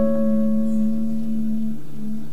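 Classical nylon-string guitar: a chord rings out and slowly fades, its low notes dying away near the end.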